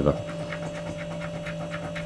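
A coin scratching the silver coating off a scratch card in quick, even strokes, several a second, over a steady low hum.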